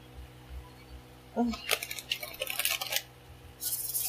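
Tarot cards being handled off-camera: a run of quick flicks and clicks, then a short dense rustle like a riffle or shuffle of the deck near the end.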